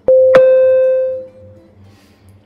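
Quiz countdown timer's time-up signal: a loud steady tone that sets in with a click, holds for about a second and fades out, with a short brighter ring struck over it just after it starts.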